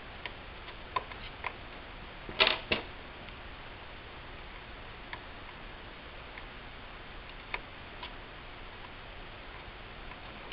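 Small sharp clicks and taps of plastic pry tools working loose tiny cable connectors on a laptop motherboard, a few light ones at first and a louder close pair about two and a half seconds in, with an occasional click later, over a faint steady hiss.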